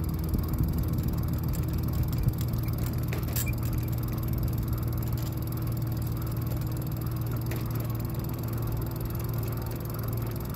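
Juiced Scorpion X e-bike riding along: a steady low hum from its motor over a constant rumble of wind and fat tyres on the path.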